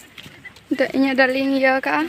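A voice holding one steady pitch for just over a second, starting about a third of the way in.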